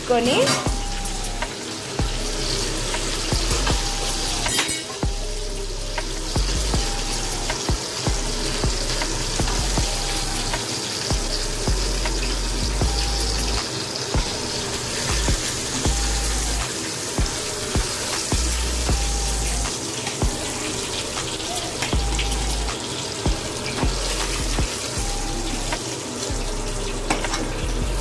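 Chicken pieces frying in oil in a shallow pan, a steady sizzle, with scattered small clicks of a metal slotted spatula against the pan.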